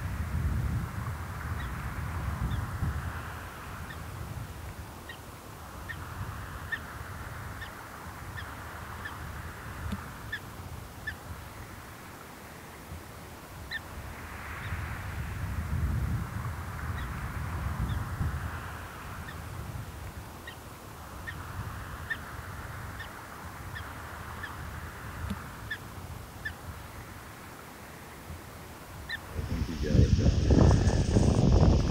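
Wind gusting on the microphone in slow swells, with faint short bird calls repeating about once a second.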